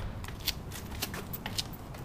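Footsteps scuffing on pavement: a string of light irregular clicks, some four a second, over a low steady rumble.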